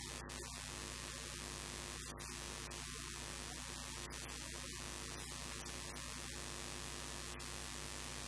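Steady electrical mains hum with a constant hiss of static, and no voice audible.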